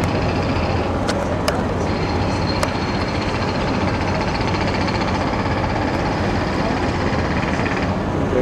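Cruise boat's engine running steadily with a low hum, heard from inside the cabin. A few light clicks come in the first three seconds.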